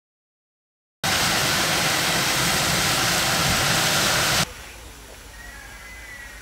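Fire hose nozzle spraying a water jet: a loud, even hiss that starts abruptly after about a second of silence and cuts off suddenly about three and a half seconds later, leaving a much quieter background.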